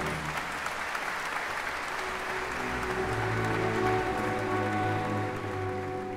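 A large concert-hall audience applauding as the orchestra's last chord dies away. Soft orchestral music comes in underneath the applause about halfway through.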